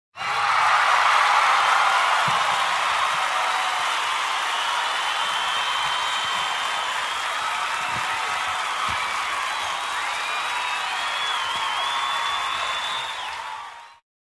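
A large concert crowd cheering, with whistles and whoops rising and falling above the roar. It fades in at once and fades out near the end.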